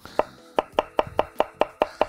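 Chef's knife slicing pickled cucumbers thinly on a wooden end-grain cutting board, the blade knocking on the board in a quick even rhythm of about five strokes a second.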